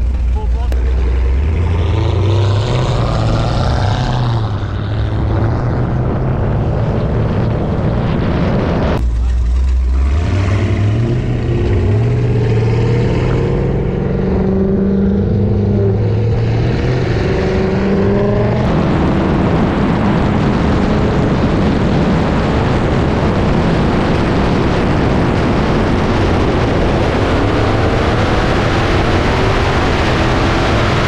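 Supercharged V8 engines under hard acceleration in a roll race. The engine note climbs in pitch several times with a brief drop about nine seconds in. From about two-thirds of the way through it becomes a steady loud roar of engine and wind noise at speed.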